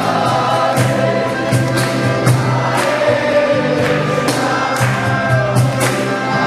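A group of voices singing a devotional chant together over a low sustained drone, with regular percussion strikes keeping the beat about every three-quarters of a second.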